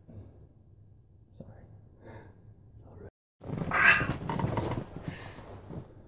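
Faint murmured voice fragments, then an abrupt edit cut with a split second of dead silence, followed by a loud, breathy vocal sound from a man for about two seconds.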